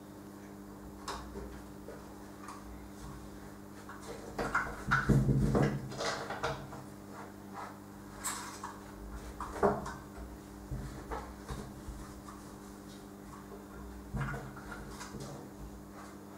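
A cat pawing and scratching at a window's frame and screen, making scattered scrapes, clicks and light rattles, with the busiest and loudest rattling about five seconds in and a sharp knock near ten seconds.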